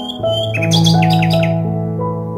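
Soft instrumental background music with long held notes, joined by a short burst of quick, high bird chirps about half a second to one and a half seconds in.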